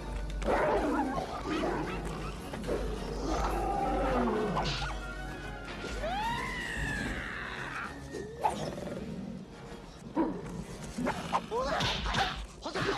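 Dramatic film music mixed with animal roaring and snarling, the sound of lions starting to fight.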